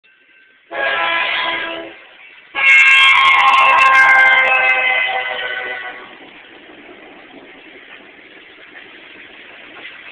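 Freight train locomotive's air horn sounding a chord of several notes twice: a short blast about a second in, then a longer blast of about three seconds that fades away. After it, the steady noise of the freight cars rolling past.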